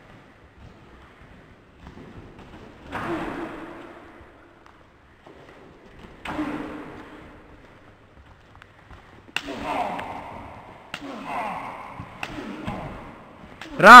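Wrestlers grappling on gym mats: thuds of bodies hitting the mats and short vocal outbursts, with a run of sharp knocks in the second half and a loud shout at the very end.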